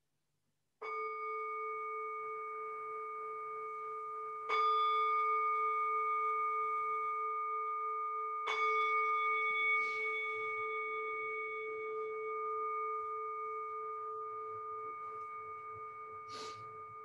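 A meditation bell (singing bowl) struck three times, about four seconds apart, each strike leaving a long, slowly fading ring.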